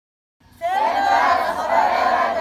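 A group of adults shouting together in unison, starting suddenly about half a second in after silence and staying loud.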